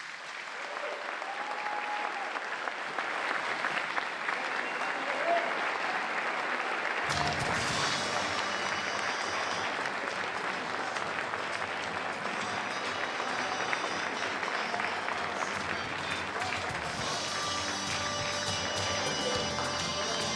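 Audience applauding in a large hall, swelling over the first couple of seconds. About seven seconds in, music with a steady bass line starts under the applause and carries on with it.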